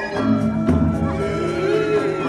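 Balinese gamelan ensemble playing, with a deep low tone coming in underneath about half a second in and holding through the rest.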